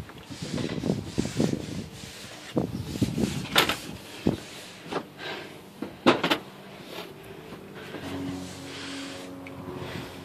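Irregular knocks and clatters with scraping and rubbing between them. A faint steady hum comes in near the end.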